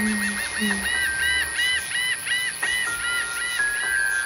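Suspense film score: a chirp-like tone repeating several times a second, with held notes stepping downward near the end, over a steady high-pitched hiss.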